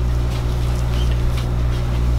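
Steady low electrical hum, a stack of even low tones that does not change, with a few faint clicks over it.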